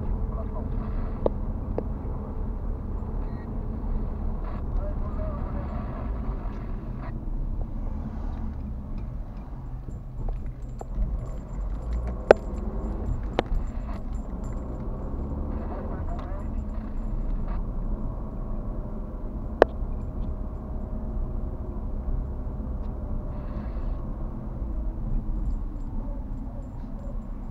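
Car driving heard from inside the cabin: a steady low engine and road rumble, with a few sharp clicks or knocks, the loudest about twelve seconds in.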